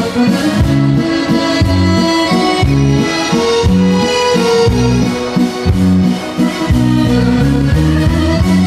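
Cooperfisa piano accordion playing a melody in held, reedy notes over a dance band's steady bass line.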